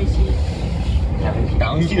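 Steady low rumble of an SAT721 series electric train running along the track, heard from inside the car, under people talking.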